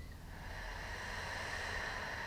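A slow exhalation through the mouth, a soft breathy hiss that builds about a third of a second in and carries on steadily: the release of a deep breath.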